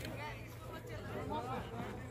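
Indistinct talking of several people's voices, with a low steady hum underneath.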